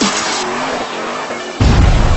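Intro sound effect of a car's tyres squealing in a burnout, over electronic dance music; a sudden heavy low boom hits about one and a half seconds in.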